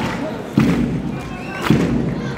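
Heavy thuds repeating about once a second, with faint wavering voice-like sounds between them.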